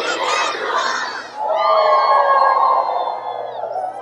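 A large crowd of children cheering and shouting. About a second and a half in, they join in one long held shout together, which fades near the end.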